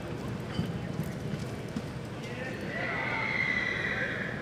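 Horse's hoofbeats on soft arena dirt as a reining horse lopes. In the second half a long high-pitched call rises over them and is the loudest sound.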